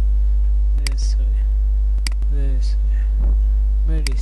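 Loud, steady electrical mains hum on the recording, deep and unchanging, with two sharp clicks about a second apart.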